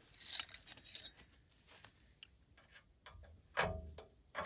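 Light, irregular metallic clicks and clinks of hand tools as a wrench and sockets are handled and tried on a bolt, with a louder short sound near the end.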